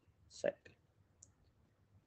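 A single word spoken softly, then about a second later one faint, short click of a computer mouse button, as a poll is launched on screen.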